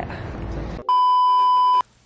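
A steady electronic beep lasting about a second, with the other sound cut out beneath it; it starts and stops abruptly. Before it there is a moment of outdoor background noise.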